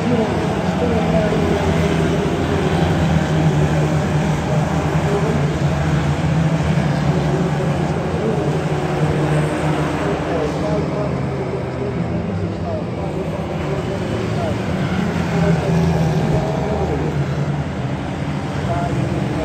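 A pack of Ministox stock cars racing around the oval, their small engines revving up and down as they go through the bends and along the straights.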